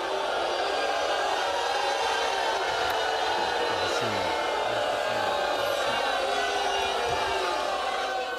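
Talk-show studio audience shouting and whooping, many voices at once, keeping up a steady loud din as a guest walks on stage.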